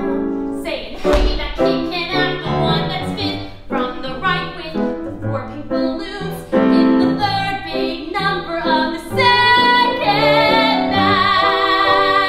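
A woman's solo voice singing a musical-theatre song over grand piano accompaniment, moving note to note and then holding a long note with vibrato over the last few seconds.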